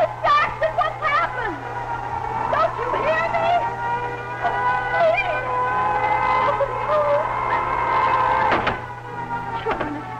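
A woman speaking, over a steady low hum and a held tone.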